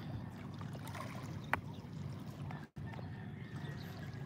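Calm sea lapping gently against shoreline rocks, a steady low wash of small waves. A single brief sharp click rises above it about a second and a half in, and the sound cuts out for an instant shortly after.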